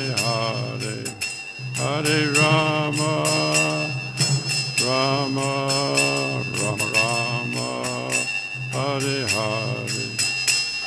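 A man singing a devotional chant in phrases, accompanied by small brass hand cymbals (karatalas) struck in a steady rhythm, their ringing held high over the voice.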